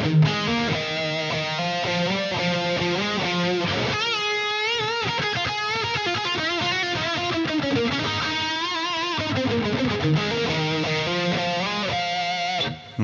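Overdriven Tokai TST-50 Strat-style electric guitar playing a lead phrase in B natural minor: quick runs of notes, then held notes shaken with wide vibrato through the middle and later part.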